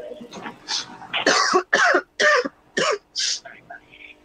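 A person coughing several times in a row, short hacking coughs about half a second apart.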